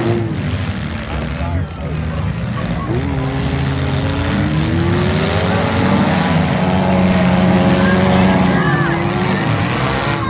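Engines of compact demolition-derby cars running and revving on a dirt arena. One engine climbs steadily in pitch for a few seconds, starting about three seconds in, and a steady lower drone follows near the end.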